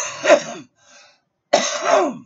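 A man coughing hard in two loud bouts, the second starting about a second and a half in.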